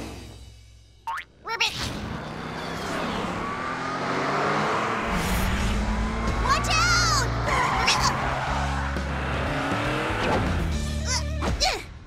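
Cartoon car sound effects: a steady engine drone and road noise, mixed with background music. A wobbling, gliding effect sounds about seven seconds in.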